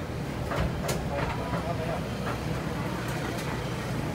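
A cleaver chopping roast meat on a wooden chopping block: about half a dozen sharp chops at uneven intervals, over a steady low rumble of street traffic.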